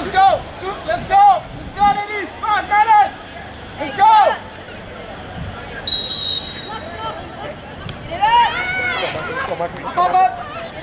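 Voices shouting across an outdoor soccer field, with one short, high referee's whistle blast about six seconds in.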